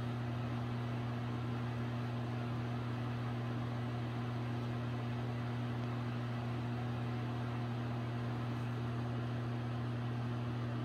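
A steady low electrical hum with no change in pitch or level.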